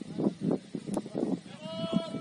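Footballers' voices shouting across the pitch in short calls during play, ending with one drawn-out call.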